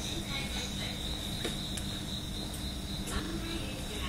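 Crickets chirping in a steady, high-pitched trill, with a steady low hum underneath.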